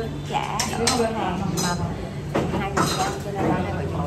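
Spoons and bowls clinking at a dining table: a handful of short, sharp clinks spread through, over background chatter.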